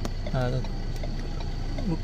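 Ford Ranger Wildtrak's 3.2-litre diesel engine idling, a steady low hum heard from inside the cabin.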